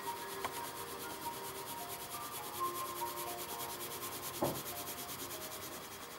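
Pencil shading on drawing paper: the graphite point rubs back and forth in fast, even scratching strokes, filling an area with tone. A soft knock sounds once, about four and a half seconds in.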